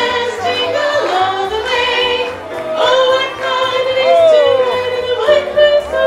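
Music with a singing voice holding and sliding between sustained notes over a steady bass line.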